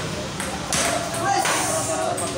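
Table tennis ball clicking sharply off the paddles and the table during a rally, a few quick hits in a row.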